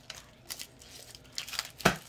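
Foil booster-pack wrapper crinkling and tearing in a few short crackles, the loudest near the end.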